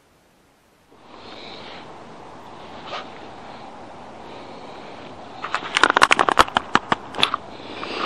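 Handling of a caught largemouth bass in a kayak: after a steady outdoor hiss, a quick irregular run of sharp slaps and clicks lasts about two seconds, from the fish and the hands and gear around it.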